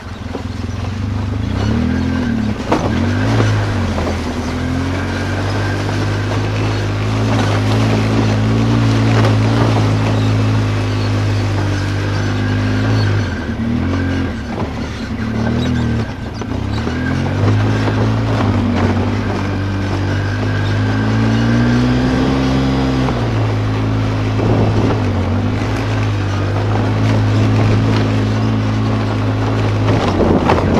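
ATV engine running under way, its pitch rising and falling with the throttle and dropping back briefly three times, mixed with knocks and rattles from the rough trail.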